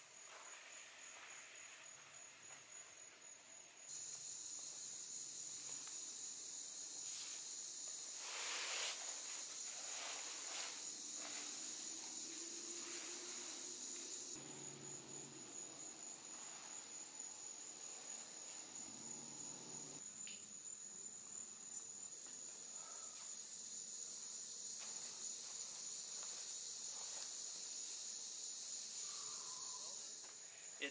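A steady, high-pitched chorus of insects that gets louder about four seconds in. There are a few faint rustles about a third of the way through.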